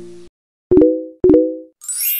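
End-card sound effects: a held musical chord cuts off, then two short pitched pops about half a second apart, and a bright chime begins near the end.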